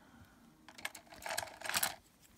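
Paintbrush handles clicking and rattling against one another as a long brush is picked out: a quick flurry of small clicks starting a little under a second in and lasting about a second.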